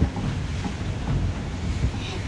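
Wind buffeting the phone's microphone, a steady low rumbling rush.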